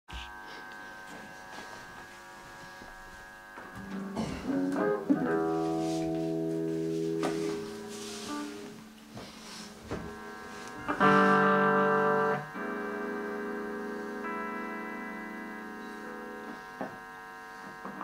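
Electric guitar through an amplifier: notes picked and left to ring, then a loud chord struck about 11 seconds in and held, followed by quieter sustained notes that die away.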